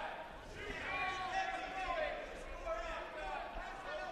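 Faint, distant voices in a large gym: background talk and calls from people around the mat, much quieter than the broadcast commentary.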